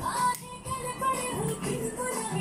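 Dance song playing: singing over a percussive beat, with a short drop in loudness about half a second in.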